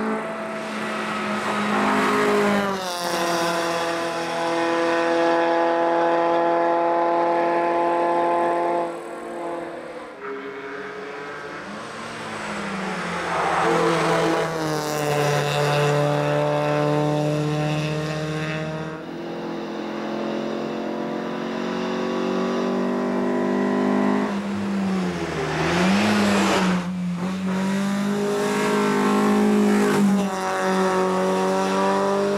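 Alfa Romeo 145 hill-climb race car's four-cylinder engine at full throttle, revving up through the gears with a sudden drop in pitch at each shift. It is heard from the roadside through several approaches, and the car comes past close by near the end.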